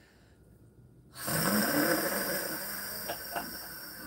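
A woman's long, loud, breathy sigh that starts suddenly about a second in with a short voiced rise and trails off slowly, with two faint clicks near the end.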